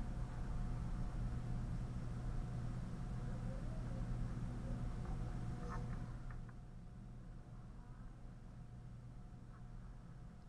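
A low steady buzzing hum that drops away about six seconds in, with a few faint ticks.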